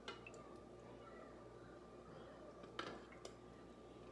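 Near silence over a faint steady hum, with a few faint clicks of a metal spoon against a glass jar as syrup is spooned over a tray of basbousa.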